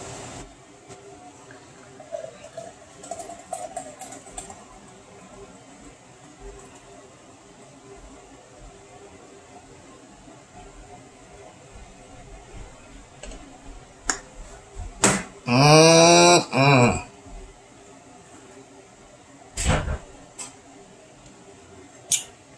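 Guinness Draught pouring from a widget can into a tall glass, a faint steady pour. About fifteen seconds in a man's wordless voice sounds loudly for about two seconds, and a sharp knock comes near the end.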